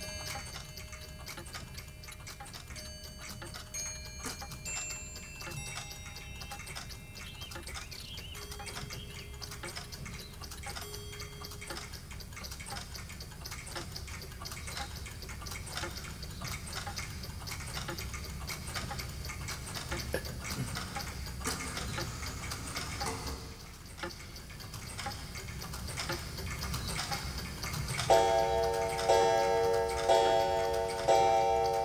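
Many mechanical clocks ticking at once, a dense overlapping ticking with faint held chime tones now and then. Near the end a louder ringing melody of chime-like notes starts up.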